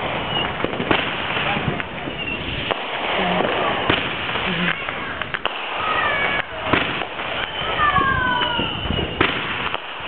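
Many fireworks going off at once: a steady crackle of firecrackers with repeated sharp bangs from aerial bursts. Several whistles that fall in pitch come in over the second half.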